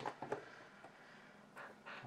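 Faint handling sounds as a small titanium-handled folding knife is lifted out of its presentation box insert, with a few soft clicks in the first half-second.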